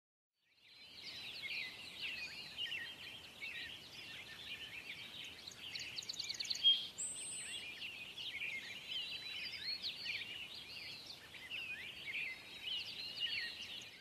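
Many songbirds chirping and singing at once, a steady chorus of short high calls that fades in about a second in. About six seconds in, a fast trill, then a single high whistle.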